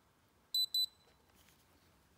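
Two quick high-pitched beeps from a UPRtek handheld spectrometer, about half a second in, as it takes a light reading.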